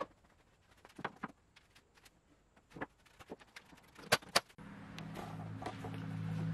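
A few scattered light knocks and clicks of handling in a workshop, with a sharper pair about two-thirds of the way through. Then a steady low hum of several held tones begins and carries on.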